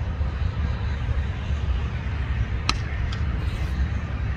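A low steady rumble throughout, with one sharp crack of a cricket bat striking the ball nearly three seconds in, followed by a fainter click.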